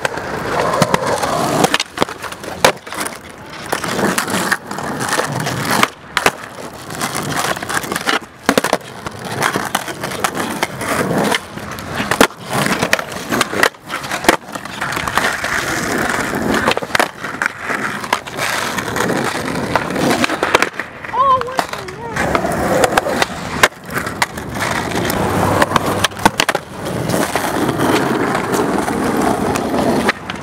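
Skateboard wheels rolling over rough asphalt, broken again and again by sharp wooden clacks of the board popping and landing during tricks.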